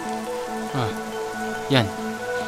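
A young woman crying, two short sobs that each fall steeply in pitch, one a little under a second in and one near the end. Rain falls steadily throughout, over soft sustained film music.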